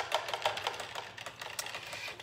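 Quick, irregular light clicking and tapping, several clicks a second.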